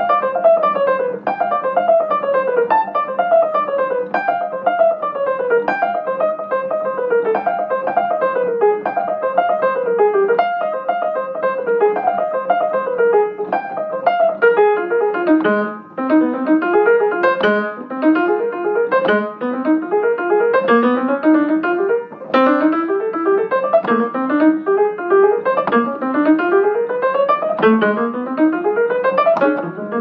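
Solo jazz piano played on an upright piano: fast, continuous runs of notes, mostly falling cascades in the first half, then quick rising runs repeated through the second half.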